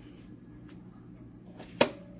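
A single sharp click near the end, from the Brother SE600 embroidery machine being handled while it is readied for stitching, with a couple of fainter ticks before it over a low steady hum.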